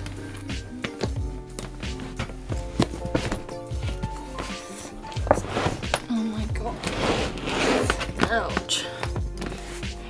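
Background music with scattered knocks and thumps from a hard-shell plastic suitcase being pressed down and handled as someone tries to close it over a full load of clothes.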